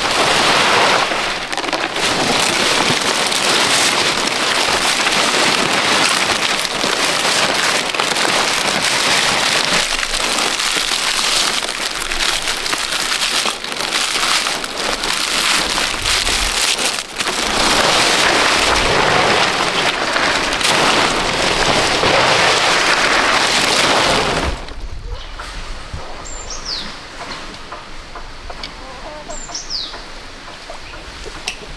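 Fresh palm fronds rustling and crackling as they are handled and bundled, a dense crackly noise. About 25 s in it stops suddenly for a quieter outdoor background, with two short, high, falling bird chirps a few seconds apart.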